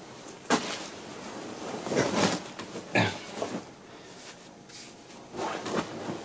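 Rustling of a bedsheet being thrown off, broken by four or five short grunt-like vocal noises from the man, each under half a second long.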